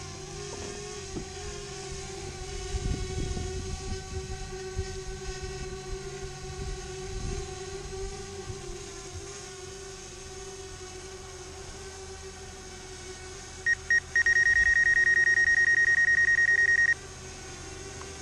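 DJI Spark quadcopter hovering, its propellers giving a steady hum. Near the end comes about three seconds of rapid electronic warning beeps, the loudest sound here.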